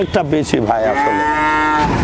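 A young dairy heifer mooing once, a single long call of a little over a second that starts about half a second in.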